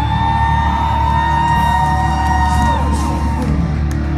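Live metalcore band playing loudly through a venue PA, heard from within the crowd, with a long high held note over the mix that rises in at the start, holds for about three seconds and then falls away.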